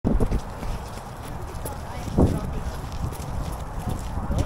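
Footsteps of several people walking on a wet concrete walkway, with irregular low thumps and faint voices.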